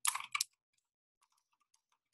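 Computer keyboard typing: a couple of sharp clicks in the first half second, then only a few faint, scattered key taps.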